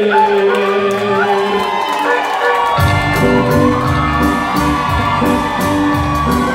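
Live band with saxophones playing cumbia-style music: long held notes at first, then about three seconds in the bass and drums come in with a steady beat. A crowd cheers over it.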